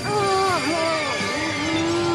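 Cartoon magic-spell sound effect as purple magic is conjured: a pitched tone that glides and wavers, then holds one steady note from about a second in, with faint high tones sweeping up and down above it.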